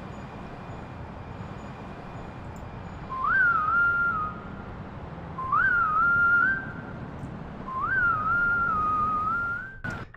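A whistled tune from a music video soundtrack: three short phrases about two seconds apart, each leaping up and then wavering, over a steady low rumbling hiss.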